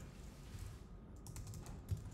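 Computer keyboard typing: a few faint keystrokes while a line of code is edited, the loudest keystroke near the end.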